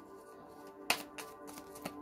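A deck of tarot cards being shuffled by hand: a few sharp card snaps, the loudest about a second in. Soft background music with a held note plays underneath.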